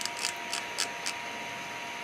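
Rotary encoder knob on a 3D-printer LCD control panel clicking through its detents as the menu is scrolled: about five quick, soft clicks in the first second or so. A faint steady whine runs underneath.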